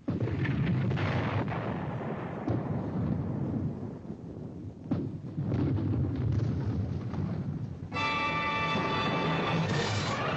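Battlefield explosions and gunfire from a war drama's sound track: a dense rumble that starts suddenly, with several sharp blasts. About eight seconds in, dramatic music with a held chord comes in.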